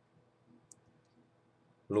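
A pause, near silent, broken by one faint, short click about two-thirds of a second in; a man's voice starts again near the end.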